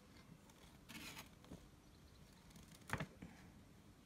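Faint rustle of paper pages being turned in a folded instruction booklet, with one brief, sharper paper flick just before three seconds in; otherwise near silence.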